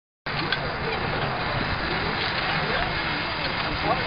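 Homemade steam tractor running with a steady hiss of steam, and people talking faintly in the background.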